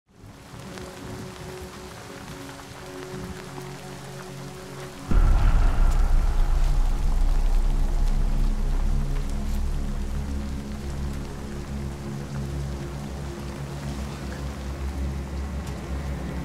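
Heavy rain falling under a film score of sustained, held notes. About five seconds in, a sudden deep bass hit makes the music swell much louder, then it slowly fades.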